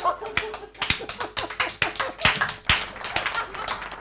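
A few people clapping unevenly in a small room, with voices underneath.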